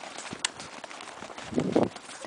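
Salukis galloping on sand, their paws making quick, rapid footfalls, with a louder brief rush of noise near the end.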